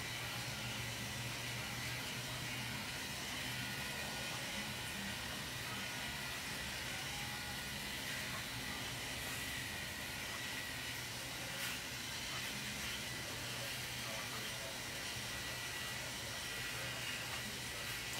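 Steady hiss of room tone with a faint low hum and no distinct event. A couple of faint ticks come about halfway through.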